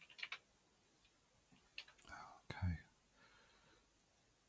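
A few soft computer keyboard keystrokes near the start, then a brief whispered mutter about two seconds in.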